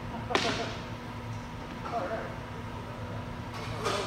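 Two sharp cracks of a single stick in use, one just after the start and one near the end, each ringing briefly in the hall.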